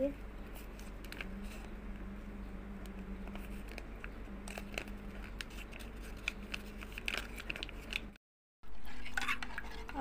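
Faint light clicks and rustling as custard powder is shaken from a paper sachet into milk in a metal pan, with a spoon clinking against the pan, over a steady low hum. The sound drops out completely for a moment about eight seconds in.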